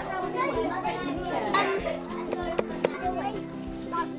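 Background music with steady held tones, over young children chattering and calling out, with a few sharp knocks in the middle.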